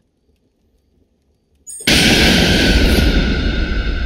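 Near silence for almost two seconds, then a sudden, loud trailer impact hit: a crash across all pitches with a steady ringing tone, which holds and slowly dies away.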